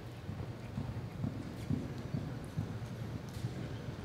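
A horse galloping on soft arena dirt: dull hoofbeats, about two strides a second, loudest in the middle.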